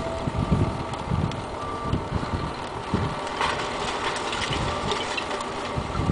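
Rear-loading garbage truck running steadily with its tailgate raised as it dumps its load, with wind buffeting the microphone in low thumps. A single sharp knock about three and a half seconds in.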